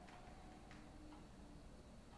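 Near silence: room tone with two faint clicks, one at the start and one under a second in.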